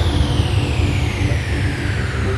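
Drum and bass track in a drumless breakdown: a slow, steadily falling synth sweep glides over a low rumbling bass.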